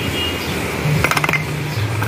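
Small fired clay pots clinking against one another as a hand rummages through a crate of them, with a quick cluster of light clinks about a second in.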